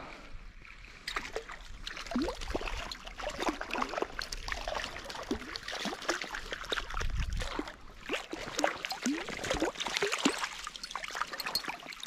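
A small hooked brown trout splashing and thrashing at the surface of a shallow stream as it is reeled in and netted, over trickling stream water, with many quick sharp splashy ticks throughout.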